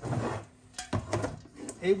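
Handling of a small plastic mini fridge: a brief rustle, then a few sharp clicks and knocks about a second in as its clip-latched door is pulled open and a soda can is handled.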